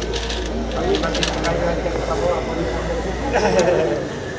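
Street ambience: indistinct background voices over a steady low rumble, with a few light clicks early on and a woman laughing briefly near the end.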